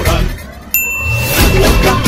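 The dance music drops away, then a single bright, bell-like ding rings out for about a second as the music comes back in. It is an edited-in transition sound effect.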